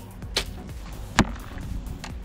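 A compound bow being shot: a sharp snap a little over a second in is the loudest sound, preceded by a fainter, higher click. Background music plays throughout.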